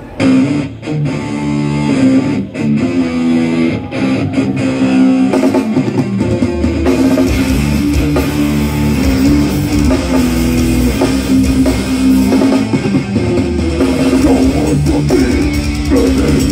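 Death metal band playing live through a festival PA, heard from the crowd: a song starts with stop-start electric guitar riffing, and the full band with heavy drums and bass comes in about seven seconds in.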